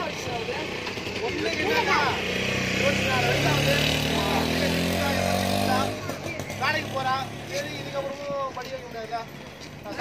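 A motor vehicle's engine running close by, the loudest sound here, building up in the first two seconds and cutting off suddenly about six seconds in, with people talking around it.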